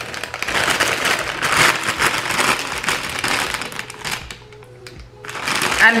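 A shiny plastic chip bag crinkling as it is handled, a dense crackle for about four seconds that then dies away.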